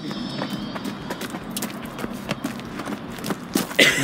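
Quick, irregular footsteps on a leaf-strewn dirt trail, mixed with handling knocks from the phone being carried. There is a louder burst just before the end.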